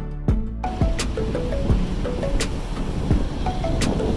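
Upbeat background music with a steady beat and a simple stepping melody. About half a second in, a steady rushing noise comes in beneath it.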